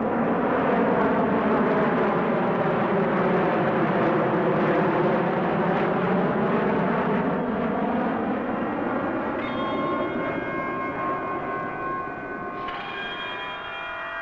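Jet noise of an RAF F-4 Phantom's twin Rolls-Royce Spey turbofans as it flies low overhead: a loud rushing that swells, sweeps in pitch as it passes and slowly dies away. From about ten seconds in, held musical tones come in under the fading jet.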